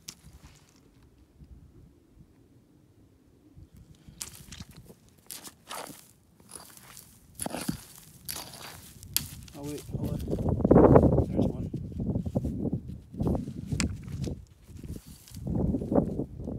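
Rock pick striking and then scraping through gravelly soil and pebbles, with crunching steps. After a quiet start come several sharp knocks about four seconds in. From about ten seconds on there is a louder, continuous scraping and digging.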